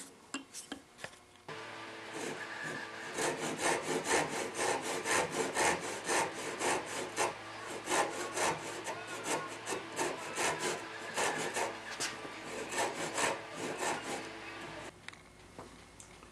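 Hand saw, a back saw, cutting a 3/16-inch-deep kerf in wood with repeated back-and-forth strokes, a few a second, starting about three seconds in and stopping near the end.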